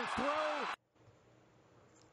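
Televised football audio, stadium crowd noise under a voice, cuts off abruptly under a second in as the highlight video is paused. Only faint room tone follows.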